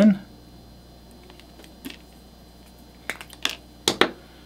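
A few small, sharp plastic clicks and taps from a hand pipetter and sample tubes being handled: one faint click near two seconds, a quick cluster about three seconds in, and a louder click near the end.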